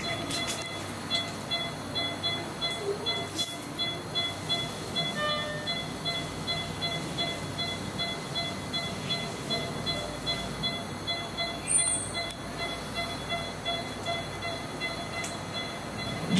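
Steady hum of operating-room equipment, with a patient monitor beeping in regular, repeated high tones.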